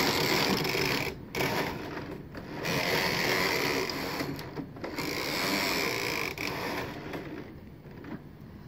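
Brother knitting machine's lace carriage being pushed across the needle bed, the carriage and needles running in several pushes with short breaks between, fading near the end.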